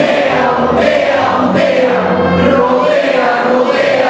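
A man singing into a microphone while a group sings along in unison, on long held notes.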